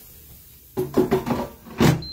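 Air fryer basket pushed into its air fryer, ending in a sharp plastic clunk as it seats, near the end. Just before it, a man's voice sounds briefly.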